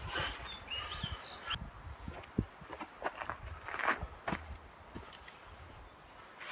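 Scattered faint clicks and knocks as a wrench and rag are handled at a tractor loader's hydraulic couplers, with a short high chirping sound in the first second or so.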